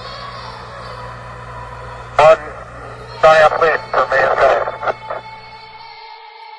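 Apollo 11 radio transmission from the Moon: a man's voice over static hiss and a steady hum, in two short phrases. Near the end the hum and hiss cut out and a held musical tone sounds.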